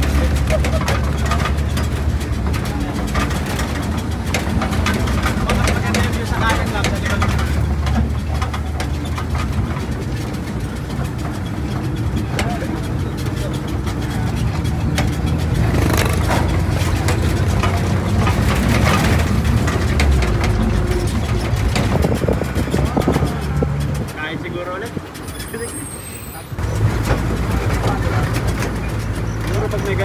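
Motor vehicle's engine running steadily as it drives, heard from the back of the vehicle, with voices mixed in. The hum drops away briefly near the end, then returns.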